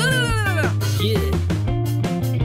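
A cartoon cat character's high-pitched, meow-like voice: one long call that rises and falls, then a shorter call about a second in, over upbeat background music.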